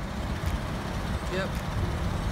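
Steady low outdoor rumble, with a short spoken "yep" about a second in.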